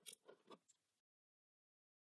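Near silence, with faint rubbing and crinkling of a sticker being smoothed down by fingers during the first second, which stops abruptly.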